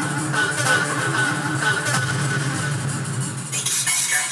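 Makina electronic dance music from a DJ mix, with a driving bass line and a bright melodic lead. Near the end the bass drops out and a hissing sweep rises into the highs.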